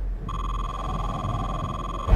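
A steady electronic beep tone, held for nearly two seconds after starting about a third of a second in, over a low steady hum.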